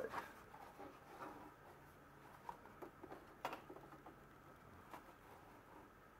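Near silence with faint rustling and a few light clicks, one sharper click about three and a half seconds in, as waxed canvas is handled and set in place at a sewing machine.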